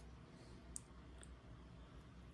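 Near silence, with two faint light clicks about half a second apart near the middle, from trading cards being handled.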